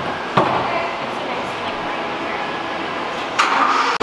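Steady background noise of a factory assembly hall, with a sharp knock about a third of a second in and a louder rush of noise near the end.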